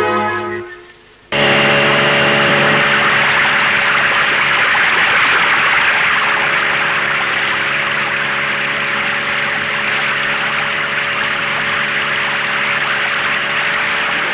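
Background music fades out, then a motorboat engine cuts in about a second in and runs at a steady drone over rushing water.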